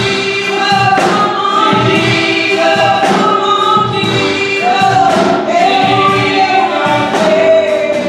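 Gospel singing by a small praise team: a man's lead voice with several women's voices in harmony, the notes long and sliding.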